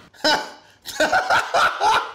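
A man laughing loudly: one short burst, then a quick run of several more from about a second in.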